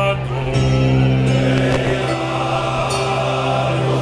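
Men's choir singing with a male soloist at the microphone, the choir holding a steady low note under the moving melody.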